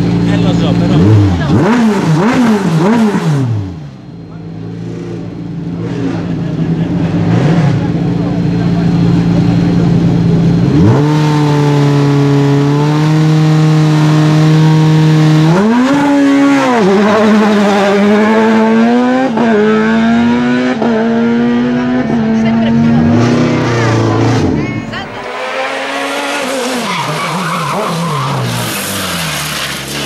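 Group CN sports-prototype race car engine idling and being blipped at the start line, then held at steady raised revs before it launches and climbs through several quick upshifts. Near the end a harsher, noisier engine sound follows as the car runs further up the course.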